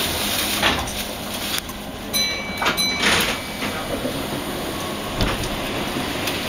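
A Keihan electric train pulling in on the adjacent track, heard from the cab of a stopped train: a steady rumble with several clunks, and a short high electronic tone about two seconds in.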